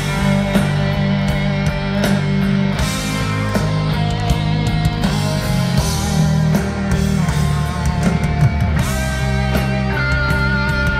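Heavy metal band playing live: distorted electric guitars, bass and drums in an instrumental passage with no singing.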